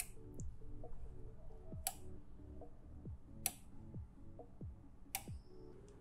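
Relays inside a Sonoff 4CH Pro smart switch clicking as its channels are switched one at a time in interlocking mode: four sharp clicks about a second and a half apart.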